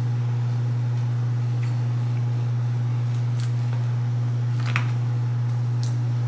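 A steady low hum, with a few faint clicks over it.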